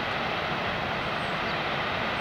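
Waterfall rushing: a steady, even roar with no breaks.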